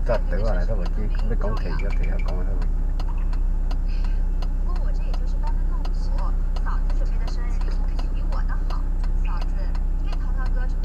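Idling car engine heard inside the cabin as a steady low hum while the car stands still, with a regular ticking and some quiet speech over it.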